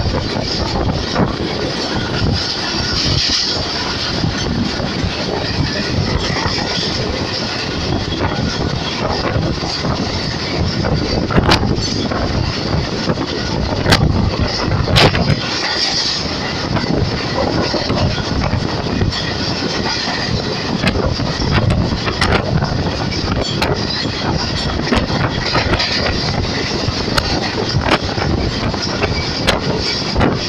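Passenger train coach running along the track, heard from its open doorway: a steady rumble and rush of steel wheels on the rails, with a few sharp clicks in the middle.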